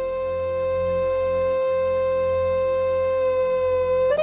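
Electronic keyboard lead voice holding one long, steady high note over a sustained low backing, between fast ornamented runs in an accordion-like voice that start again right at the end.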